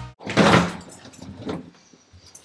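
Hotel elevator's sliding doors opening: a short rush of noise about half a second in that fades away, then a single knock around a second and a half in.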